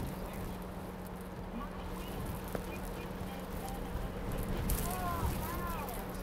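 Steady low rumble of storm wind with a constant low hum, and a faint voice briefly near the end.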